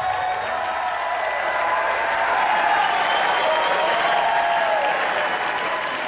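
Audience applauding loudly after a rock song ends.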